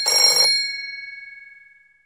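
Telephone bell ringing: a burst of ringing that stops about half a second in, then the bell rings on and fades away.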